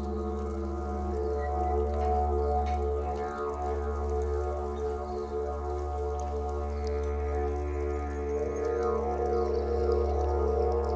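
Didgeridoo playing a continuous low drone with a stack of steady overtones. The overtones slide up and down twice as the player reshapes the tone.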